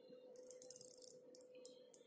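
Very faint handling noise: a few soft clicks and rustles from wires and a plastic wire-to-board connector being turned in the fingers, over a faint steady hum.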